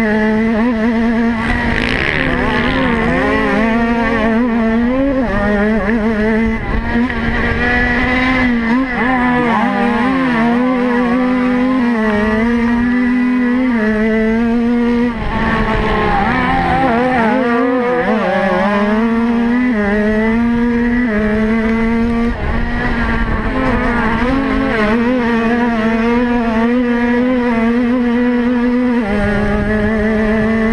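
Motocross bike engine heard from the bike itself, running hard at high revs. The pitch holds level for stretches and steps up and down with throttle and gear changes. About halfway through it drops and climbs back up.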